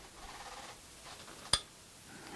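Faint handling sounds as thread is drawn through a sewing machine's thread guide, with one sharp click about one and a half seconds in.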